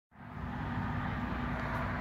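Steady low engine rumble with a faint constant hum.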